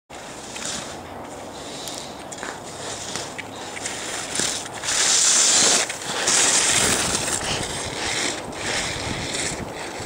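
Skis carving and scraping on packed snow through a run of turns, with wind rushing over the microphone; the loudest scrapes come in two hissing spells around the middle.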